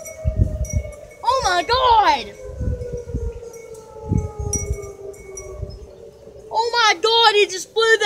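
Outdoor tornado warning siren, its steady tone slowly winding down in pitch, with wind buffeting the microphone. Short, rapid chirping sounds break in about a second in and again near the end, and these are the loudest.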